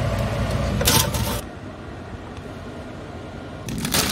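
Steady rushing noise of a gas hob burning under a saucepan of heating baked beans, with a brief loud clatter about a second in. The sound then drops to a quieter background noise. Near the end a plastic bag of salad leaves crinkles loudly.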